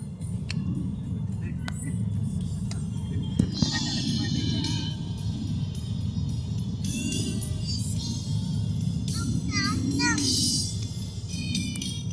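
Steady low rumble of a moving car heard from inside the cabin, with music and voices over it.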